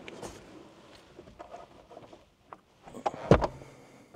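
A single sharp thump a little over three seconds in, over faint background noise and a few light clicks.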